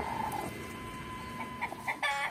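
Chickens clucking faintly over low background noise, with a thin steady high tone underneath.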